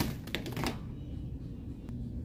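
Wire shopping cart rattling as it is pushed along, with a quick run of clicks and clatters in the first half second and one more click near the end, over a low steady store hum.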